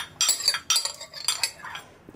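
Metal ladle clinking and scraping against white ceramic bowls while ladling food: a quick run of clinks, fading toward the end.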